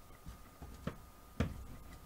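A flat plastic tool rolled back and forth over a rope of soap dough on plastic sheeting: faint rubbing and crinkling, with two light knocks of the tool about a second in and about a second and a half in, the second the louder.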